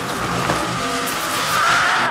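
Film trailer soundtrack: loud, dense, noisy sound design layered over music, with a screeching band that rises a little in pitch near the end.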